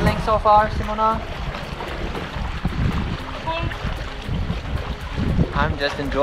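Wind rumbling on the camera microphone over water sloshing around a stand-up paddleboard as it is paddled on open sea.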